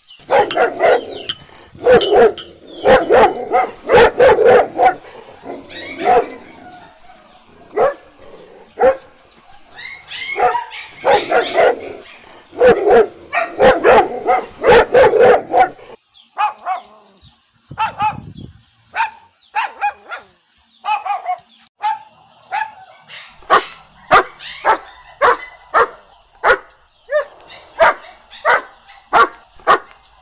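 Siberian husky puppies barking and yipping in short repeated calls through the first half. After that comes a steady run of quick clicks and taps, about two a second, from the puppies eating at ceramic bowls.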